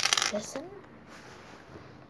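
Homemade glue-and-detergent slime squeezed in the hand, giving a short crackly squelch in the first half second, then a few faint small pops.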